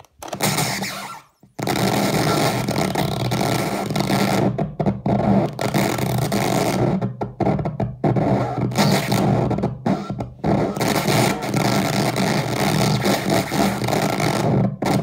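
Circuit-bent Czech speak-and-tell toy giving out harsh, distorted electronic noise: a dense, buzzing wall of sound over a steady low drone. It cuts out briefly several times as its buttons and bend knobs are worked.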